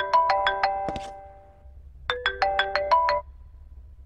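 A mobile phone's ringtone: a short melody of bright chiming notes that rings out and then repeats about two seconds in, an incoming call.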